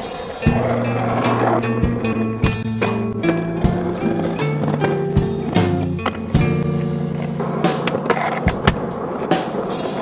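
Skateboard wheels rolling on asphalt, with sharp clacks of the board popping and landing, over background music with a bass line of held notes.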